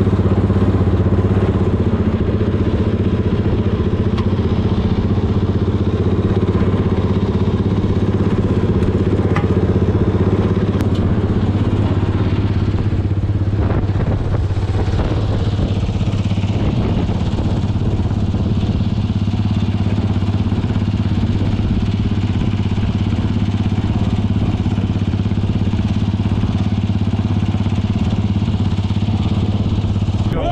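Sierra Cars 700R buggy's engine idling steadily, a low even drone with no revving.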